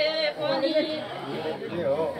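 A sung note ends just after the start, then several people talk at once in a chattering crowd.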